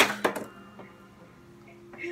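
Sharp hand claps: one loud clap, then three quicker, softer ones within about half a second.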